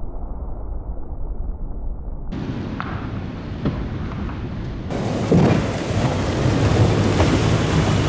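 Ford F-350 pickup with a 7.3 Powerstroke diesel smashing through two water-filled 55-gallon drums: a deep rumble of engine and water spray, with scattered clicks of water and debris coming down. The sound changes abruptly twice and is loudest after about five seconds, with the diesel running close by.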